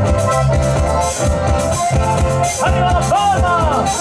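Chilean ranchera band playing a cueca live: accordion over electric bass and percussion in a steady dance rhythm. From a little past halfway a voice cries out over the music with a wavering, gliding pitch.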